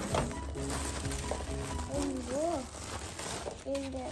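Plastic protective film on a new air fryer oven crinkling as it is pulled and handled. In the second half a voice makes sing-song rising-and-falling sounds, twice.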